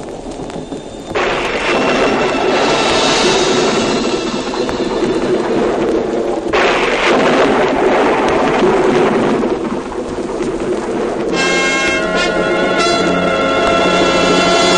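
Thunderstorm sound effect: two sudden crashes of rolling thunder, the first about a second in and the second about six and a half seconds in, under music. Near the end the storm gives way to a loud held chord of music.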